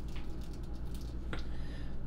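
A steady low hum with faint small handling noises and one faint click about a second and a half in.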